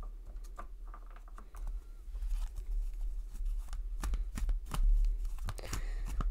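A tarot deck being shuffled by hand: a quick run of dry card clicks and flicks, sparse at first and busier and louder from about two seconds in.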